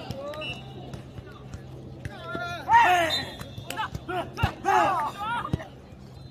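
Jokgu players shouting calls during a rally, loudest a little before halfway, with two sharp thuds of the jokgu ball about a second apart near the end.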